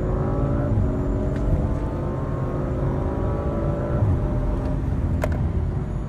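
2023 Audi RS5's twin-turbo V6 accelerating at full throttle, heard from inside the cabin: the revs climb steadily through the gears and the pitch drops at the upshifts, one around four seconds in. A sharp click comes near the end.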